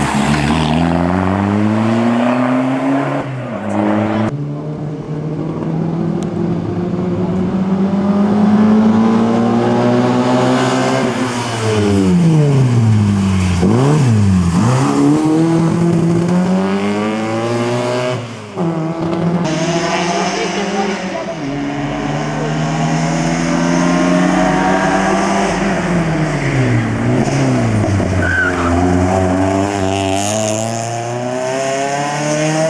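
Hatchback race cars, a Seat Ibiza among them, accelerating hard up a hill-climb course one after another. Each engine climbs in pitch and drops back at every upshift, and the pitch falls steeply as a car passes close by.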